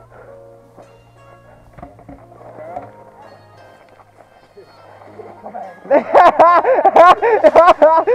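Hearty laughter in rapid, high-pitched bursts, loud from about six seconds in, over faint background music.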